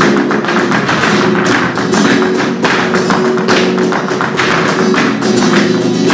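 Live flamenco: a flamenco guitar playing under dense, sharp percussive strikes from a dancer's footwork and hand claps.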